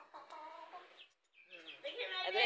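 A chicken clucking faintly: one drawn-out call in the first second and another starting near the end.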